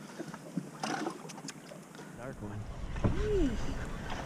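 Wind buffeting the microphone, a low rumble that comes in about halfway and grows, with a short rising-and-falling voice sound near the end.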